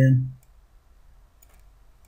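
A few faint computer mouse clicks, following the end of a spoken word.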